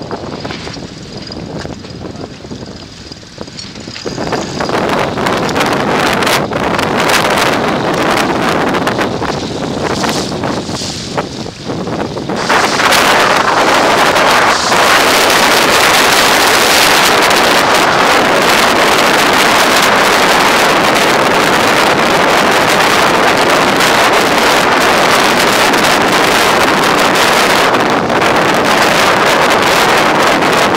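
Strong wind buffeting the microphone, gusting unevenly at first. From about twelve seconds in it turns into loud, steady wind noise.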